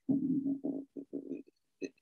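A voice speaking indistinctly through a video call's audio, muffled, with only its low tones coming through in short syllable-like pieces; it breaks off about a second and a half in.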